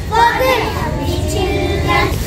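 Young children's voices singing a phonics alphabet song together.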